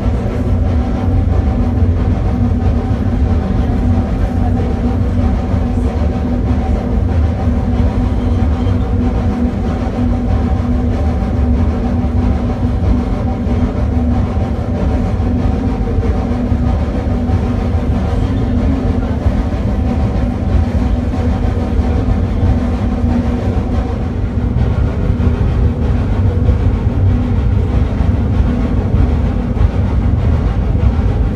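Steam rack locomotive of the Snowdon Mountain Railway pushing its carriage uphill, heard from inside the carriage: a loud, steady rumble with droning tones running through it.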